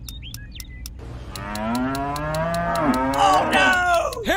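A cow mooing: one long, drawn-out moo that starts about a second in and fades out near the end, over a quick, steady ticking.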